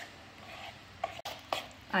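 Metal spoon stirring thick tahini sauce, thinned with water, in a bowl: quiet wet stirring with a few light clicks of the spoon against the bowl in the second half.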